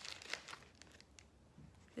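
A foil-lined snack wrapper crinkling as it is pulled open, faint, dying away within the first half second, followed by a few faint clicks.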